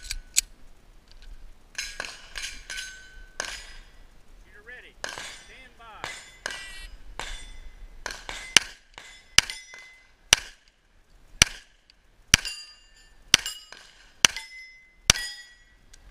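Pistol shots at steel targets, most reports followed by the clang and short ringing of a struck steel plate. The shots are irregular at first, then come steadily at about one a second through the second half.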